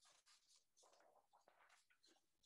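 Near silence: faint room tone with soft, scattered scratchy rustles.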